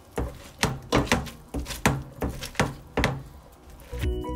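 Boiled cauliflower being smushed with a black plastic potato masher in a metal pot: a run of short thunks and squishes, about two strokes a second, as the masher hits the pot bottom.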